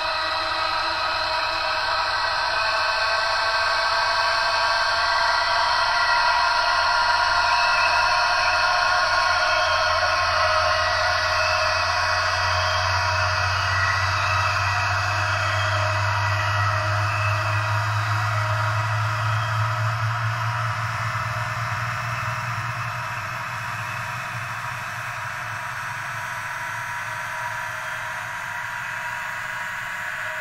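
Ambient experimental drone music played from cassette: many sustained tones layered together and slowly gliding in pitch over a faint hiss. A low hum swells up in the middle and fades again before the end.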